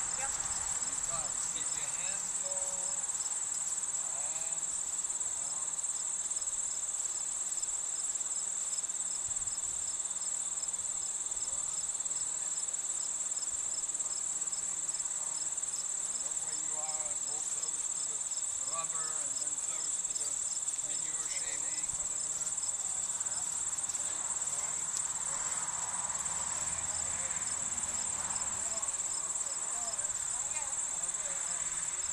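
A steady, high-pitched insect chorus trilling without a break in the grass, with a faint, evenly repeating pulse above the lower din.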